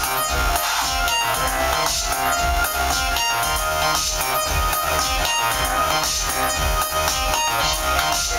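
Live psy trance electronic music played through the venue's speakers: a steady pulsing bass beat under short, repeating synthesizer notes.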